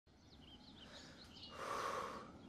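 Faint small birds chirping, then about a second and a half in a breathy, straining exhale from a man pressing a barbell on a weight bench.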